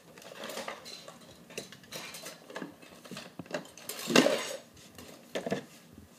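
Hard items clinking and clattering against a plastic carrying case and each other as a refrigerant identifier kit is handled and unpacked, with irregular clicks and rustling; the loudest clatter comes about four seconds in.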